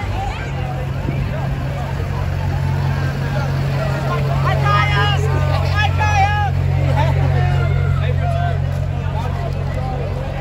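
A pickup truck's engine running steadily at a crawl as it passes close by, under the chatter of a street crowd. Several voices call out loudly about halfway through.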